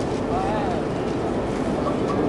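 Indistinct voices over a steady rumbling background noise, with a brief snatch of a voice about half a second in.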